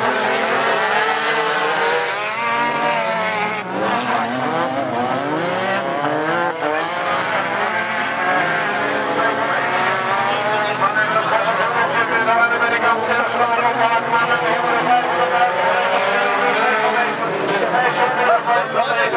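Several standard-class racing cars' engines running hard on a dirt track, their pitch rising and falling as they rev and lift off, overlapping continuously.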